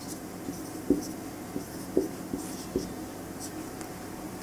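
Marker pen writing on a whiteboard: a handful of short strokes and taps spread over the first three seconds, the clearest about a second in and at two seconds.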